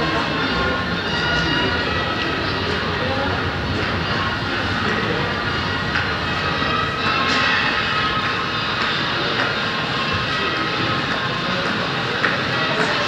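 Busy pedestrian-crossing street ambience: a steady mix of crowd voices and city noise, with sustained high tones running through it.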